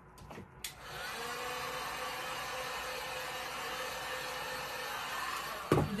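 Electric heat gun blowing steadily over freshly poured epoxy resin to bring up and pop bubbles, with a faint motor hum; it switches on under a second in and cuts off about five seconds later, followed by a sharp knock.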